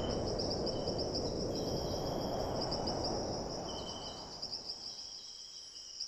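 Outdoor ambience: a steady high-pitched insect trill with a few short chirps, over a low background rumble, fading gradually toward the end.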